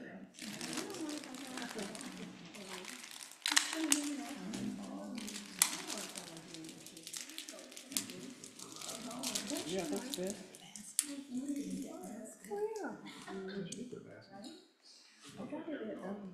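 Indistinct voices talking in a small room, with rustling and crinkling handling noise in the first couple of seconds and a few sharp clicks or knocks scattered through.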